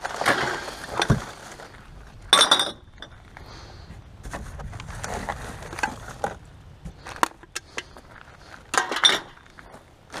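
Hands rummaging through rubbish in a plastic wheelie bin: packaging rustling and shifting, with bottles clinking against each other in a string of short clatters. The loudest clatters come about two and a half seconds in and near the end.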